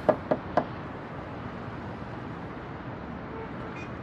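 Three quick knuckle knocks on a car's roof, the first the loudest, followed by a steady low background hum.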